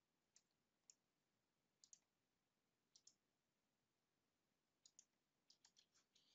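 Near silence with faint computer mouse clicks, about a dozen of them, some single and some in quick pairs.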